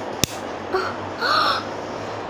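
A sharp click near the start, then two harsh bird calls, a short one and a louder one about a second in, each arching up and down in pitch, over a steady background hum.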